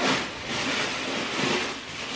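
Continuous rustling of plastic packaging as clothes are taken out of a delivery box.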